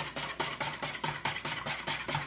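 A spoon stirring a thick milk mixture in a plastic bowl, scraping and tapping against the bowl in quick repeated strokes.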